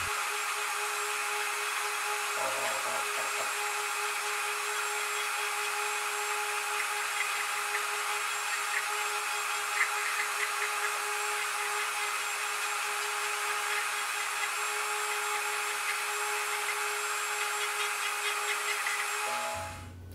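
A Dremel rotary tool running at a steady whine with a buffing wheel, softening the edges of a Kydex sheath, with a few faint ticks in the middle. It stops just before the end.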